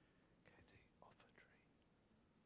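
Near silence: room tone, with a faint, brief whispered voice near the middle.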